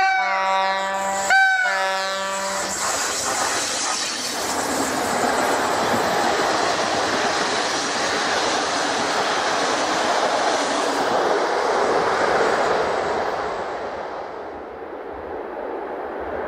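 PKP EP07 electric locomotive sounding its horn: one blast ending just after the start and a second, lasting over a second, about a second later. The locomotive and its passenger coaches then pass with steady wheel-on-rail noise that fades near the end.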